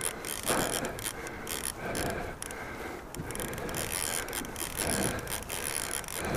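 Baitcasting reel being cranked against a hooked muskie on a bent rod: a continuous mechanical whirring of the reel's gears, with many small clicks.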